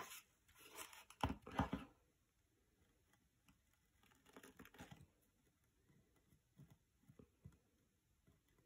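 Quiet handling noises of craft work: short bursts of crinkling and scraping as a copper scouring pad is pressed and adjusted on a wooden box frame, in the first two seconds and again about four seconds in, then only faint ticks.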